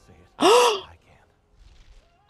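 A man's short, breathy gasp with a voiced "oh" that rises and then falls in pitch, lasting about half a second and starting a little way in. It is an emotional reaction.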